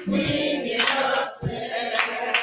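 Gospel praise team and congregation singing together, unaccompanied, with sharp hand claps about once a second.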